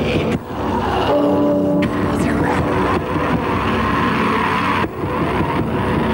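Black metal: loud, heavily distorted guitars and drums in a dense continuous wall of sound, with a voice over it and two brief drops in level, about half a second in and near five seconds.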